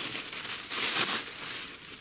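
Plastic bubble-wrap packaging crinkling as it is pulled out of a cardboard box and handled. It is loudest about a second in.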